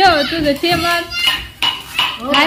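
A woman's voice in the first second, then a few sharp metallic clinks of metal kitchenware that ring briefly.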